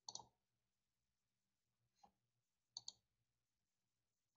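Computer mouse clicking against near silence: a quick pair of clicks just after the start, a faint single click about two seconds in, and another quick pair just before the three-second mark.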